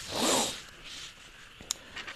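Paper sheets rustling and sliding for about half a second as a page of notes is moved, followed by a single light click near the end.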